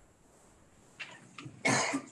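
A person coughs once, briefly, near the end, after a second or so of quiet room with a faint click.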